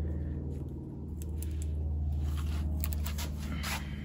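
Pliers working on a bare metal gear-shift lever, making a few light clicks and scrapes, over a steady low hum.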